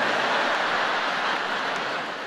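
Large theatre audience laughing after a punchline, a dense, steady wash of laughter that fades slightly toward the end.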